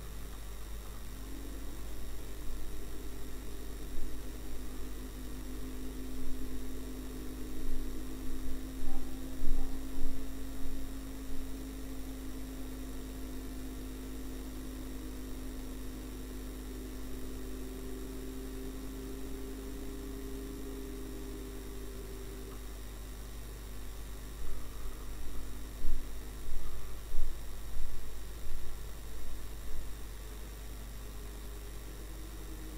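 Steady low electrical hum, with a steady engine drone through most of it and louder, uneven surges of noise in two stretches, a few seconds in and again near the end.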